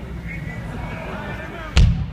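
A live metal band's PA hums low under faint crowd voices. Near the end, a sudden loud crash of drums and distorted guitar comes in as the band launches into its final song.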